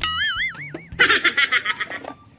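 Edited-in sound effects: a wobbling tone that dies away in under a second, then a second warbling, many-toned effect starting about a second in.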